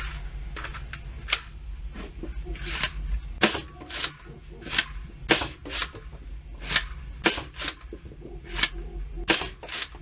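Homemade 3D-printed Caliburn spring-plunger foam blaster in its Rival-ball setup, being primed and fired repeatedly: a run of about a dozen sharp clacks and pops. Fitted with the weakest spring, it shoots softly.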